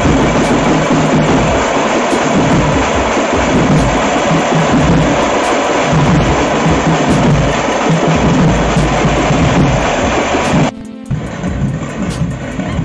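Street drum band playing loud and hard: a big bass drum and smaller side drums beaten together in a dense, driving rhythm. It drops off sharply just before the end.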